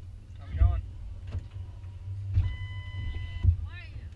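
A pickup's passenger door opening and shutting with heavy thuds as a passenger gets in, the shut about three and a half seconds in being the loudest. A steady chime tone sounds for about a second before the door shuts and stops as it closes. There are brief voices under a low idle rumble.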